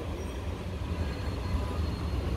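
Steady low rumble of background noise with a faint hiss, even throughout.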